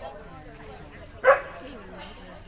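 A dog barks once, a single short loud bark a little over a second in, over faint background voices.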